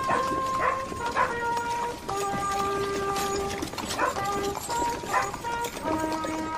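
Music: a melody of long held, organ-like electronic notes that change pitch every second or so. A few short yelp-like calls cut in over it.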